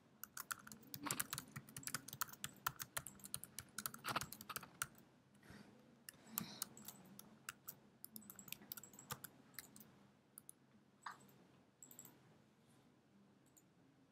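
Typing on a computer keyboard: a quick run of keystrokes over the first five seconds, then scattered key presses and clicks that thin out toward the end.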